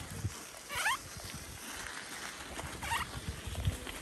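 Bike tyres crunching over a gravel track in an irregular low crackle, with two short, high, wavering squeaks, one about a second in and another near three seconds.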